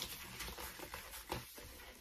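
Faint rubbing and a few short squeaks of a latex 260 modelling balloon being squeezed and twisted by hand.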